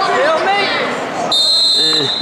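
Spectators and coaches shouting, then a referee's whistle blows one steady high note for most of a second near the end, stopping the action.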